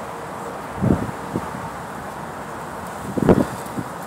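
Two short puffs of breath from a man smoking a cigar, one about a second in and one near the end, over a steady hiss of wind.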